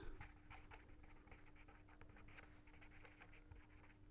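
Near silence: faint scratching of a pen writing on paper, over a faint steady hum.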